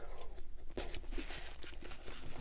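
Close-miked eating: a bite of a burger in a soft bun, then chewing, heard as a steady run of small irregular clicks and crackles from the mouth.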